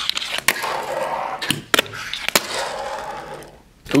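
Fingerboard (Tech Deck) tricks on a cardboard box: several sharp clacks as the board pops and lands, with two stretches of the trucks and wheels scraping and rolling along the box's edge in a 5-0 grind. The scraping fades out near the end.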